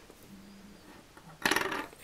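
A quiet stretch, then about one and a half seconds in a short, breathy exclaimed 'oh' of delight at the scent of a cherry lip balm.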